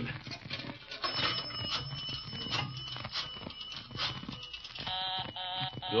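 Radio sound effect of a telephone being dialled again, a run of short clicks, followed near the end by a pulsing busy signal: the line is still engaged.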